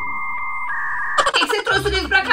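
Steady, held synthetic tone used as a dramatic editing sound effect, stepping up in pitch partway through and stopping a little over a second in.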